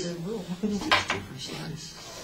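A short, sharp clatter, like a hard object knocked or set down, about a second in, with people talking in the room.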